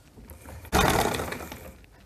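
An old black sewing machine runs briefly, stitching for about a second. The clatter starts suddenly and fades as it stops.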